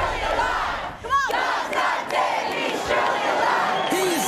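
A crowd of people shouting and cheering together, with one voice yelling out above the rest about a second in.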